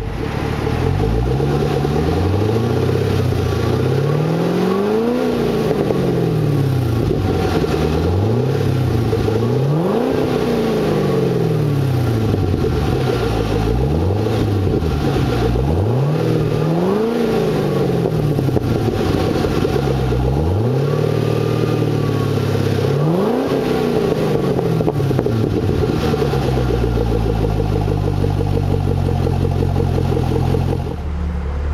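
Supercharged LS3 6.2-litre V8 idling through a custom stainless steel dual exhaust and being revved repeatedly in place. Four revs climb high and fall back to idle, with a few smaller blips between them.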